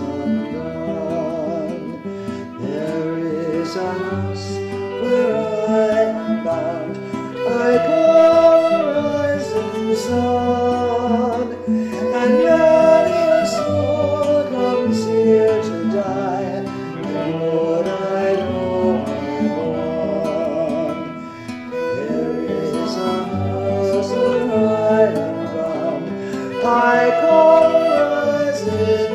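Instrumental break of a Celtic folk-blues song: a fiddle melody that wavers in pitch, over guitar accompaniment and a low bass part.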